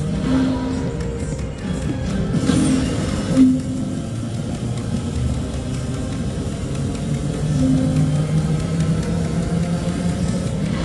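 Electronic game music and reel sounds from a video slot machine playing repeated spins, with held low tones throughout and a brighter, busier burst about two and a half seconds in.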